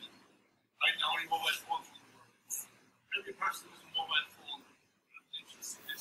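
Soft, indistinct speech from someone off the microphone, in bursts with short pauses: a comment or question put from the room.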